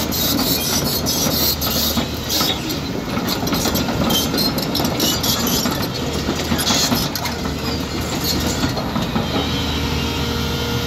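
Caterpillar 323D tracked excavator travelling, its steel tracks clanking and rattling in rapid irregular strokes over the steady running of its diesel engine.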